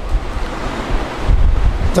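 A rushing noise with a deep rumble on a close microphone, strongest a little past the middle. This is air or handling noise on the mic rather than speech.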